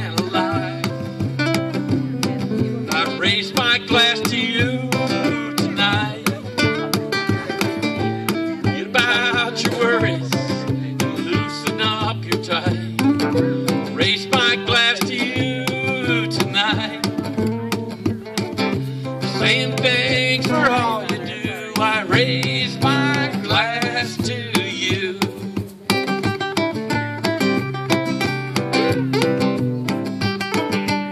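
Several acoustic guitars playing an instrumental break between verses of a folk song, strumming chords under wavering melody lines. Near the end the playing settles into steadier strummed chords.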